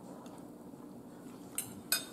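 Metal fork clinking twice against the eating bowl near the end, two short sharp clinks a fraction of a second apart, over faint room tone.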